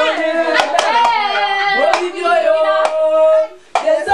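A group of voices singing together, with a few sharp hand claps cutting through; the singing breaks off briefly near the end and picks up again.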